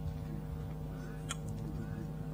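A steady low hum on one unchanging pitch, with a stack of overtones. A single faint click comes a little past halfway.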